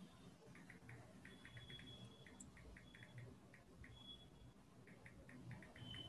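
Near silence: faint room tone with clusters of soft, short high ticks.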